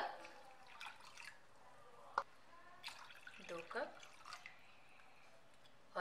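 Water poured from a plastic cup into a glass bowl of semolina, faint splashing and glugging in a few short spurts, with a sharp tick about two seconds in.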